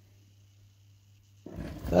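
Near silence with a faint steady low hum, then about a second and a half in a man's low, gravelly groan of pain that runs into his speech.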